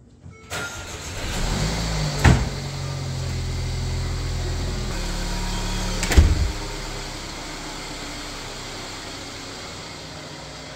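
A Mercedes-Benz sedan's engine running steadily, with two loud thumps about two and six seconds in; the engine sound becomes quieter after about seven seconds.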